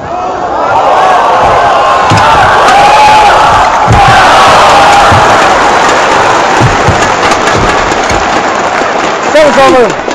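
Arena crowd cheering and shouting loudly through a badminton rally, with scattered low thumps in the noise.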